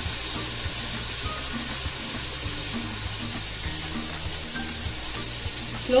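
Tomato-purée masala sizzling steadily in an oiled frying pan over a low flame as it cooks down for the oil to separate, with a few light strokes of a wooden spatula. Soft background music plays underneath.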